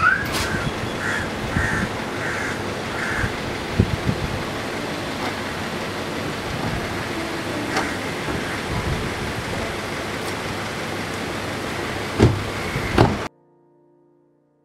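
Street noise with traffic, with a run of short chirps in the first three seconds and scattered knocks, two louder knocks near the end. The sound cuts off suddenly to near silence shortly before the end.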